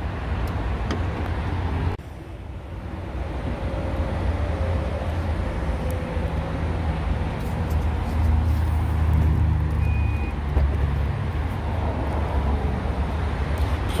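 Steady low rumble of traffic noise, with the 2021 Mazda CX-5's rear liftgate unlatching and rising open in the second half.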